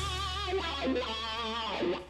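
Short music sting: a held electric guitar note with vibrato over a steady bass. It stops just before two seconds in.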